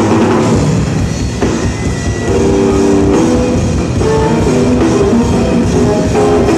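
Live electric bass guitar and drum kit playing loud, fast music through a venue PA, heard from among the crowd: dense, rapid drum strokes under held, melodic bass notes, easing slightly for about a second near the start before building back.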